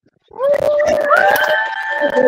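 Several people screaming and cheering in excitement at once over a video call, with long held shrieks starting about a third of a second in, mixed with laughter.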